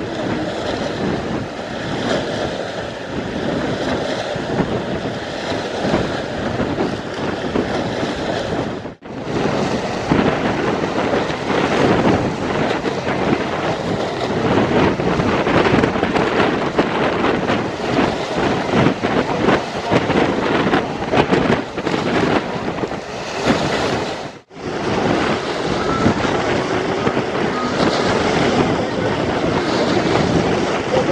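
Wind-driven waves washing and splashing against a stone and concrete embankment, with strong wind buffeting the microphone. The sound cuts out briefly twice.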